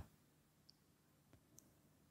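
Near silence: room tone with three or four faint short clicks.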